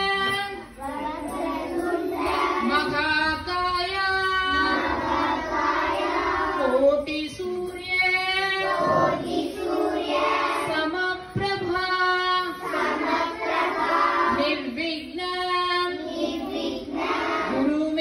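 A group of children chanting a devotional chant in unison, with a woman's voice among them, in long held notes on nearly one pitch, phrase after phrase with short breaks for breath.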